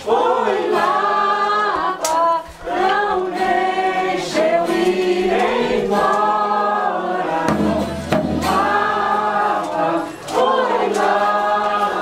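A Folia de Reis troupe singing together, several voices stacked in harmony on long held phrases, with short breaks between phrases about two seconds in and again about ten seconds in.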